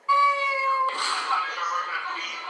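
A single drawn-out, meow-like call, high and slightly falling in pitch, that starts abruptly and cuts off about a second in. Music with voices follows it.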